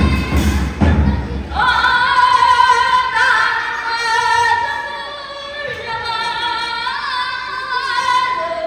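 Tibetan opera (Ache Lhamo) singing by a young solo voice: long, high held notes with wavering ornaments and glides between pitches, coming in about a second and a half in after some low thudding.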